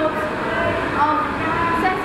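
A woman speaking, over a steady low hum.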